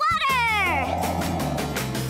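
A high, voice-like cartoon sound sliding steeply down in pitch over about the first second, followed by children's cartoon background music with low held notes.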